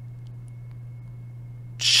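Room tone in a pause in speech: a steady low hum with a faint, thin high-pitched whine and a couple of very faint ticks.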